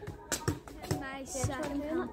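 A boy talking, with a few short sharp knocks of a football being played on paving in the first second.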